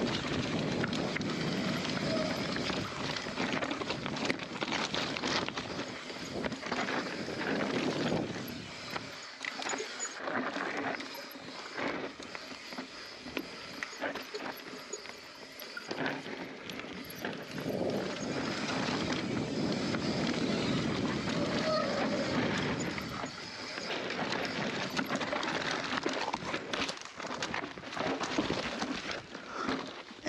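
Mountain bike descending a rough dirt and rock trail at race pace: knobby tyres rolling and scrabbling over dirt and stones, with constant clicks and knocks of the bike rattling over rough ground. Lighter for several seconds midway.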